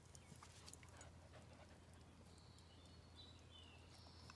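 Near silence: faint outdoor background with a steady low hum, scattered soft clicks and a faint high whistle about halfway through.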